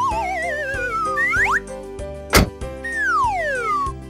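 Cartoon sound effects over background music: a wobbling whistle that slides down in pitch during the first second, then two quick rising swoops, a sharp pop a little past halfway, and a long falling whistle near the end.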